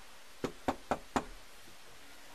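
Four quick, evenly spaced knocks on a front door, about four a second, starting about half a second in.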